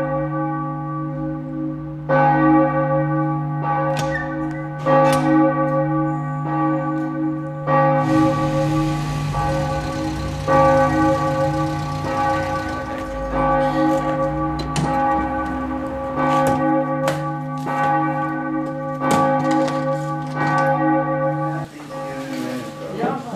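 Church bells ringing: repeated strikes overlapping at uneven spacing, each leaving a long ringing tone. A low rumble with hiss runs under them for a few seconds from about eight seconds in, and the ringing stops suddenly near the end.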